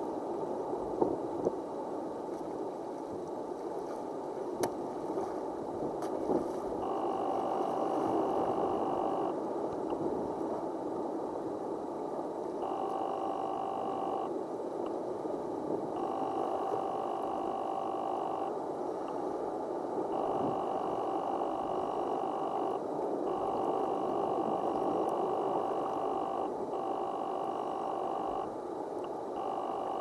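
Water sloshing and lapping around a camera held at the sea surface, a steady rushing noise. From about seven seconds in, a steady tone of several pitches joins it, switching on and off in stretches of one to three seconds.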